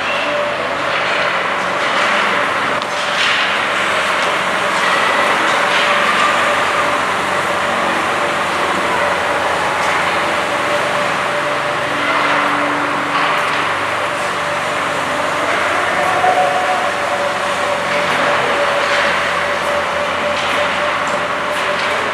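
Ice hockey play in an indoor arena: skates scraping the ice and sticks and puck clacking in short bursts over a steady hum.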